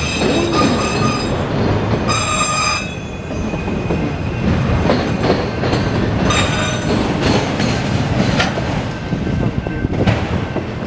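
Autorack freight cars rolling past close by, a steady rumble of wheels on rail. High-pitched wheel squeals ring out in the first second and again around two to three seconds in: flange squeal as the train turns onto the curve. Now and then the wheels clack over rail joints.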